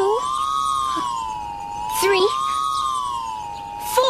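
A steady electronic tone that slowly wavers up and down like a siren, about once every two seconds: a sound effect for a tethered punch ball swinging around its pole. Short swishes come about every two seconds, with brief puppet-voice exclamations between them.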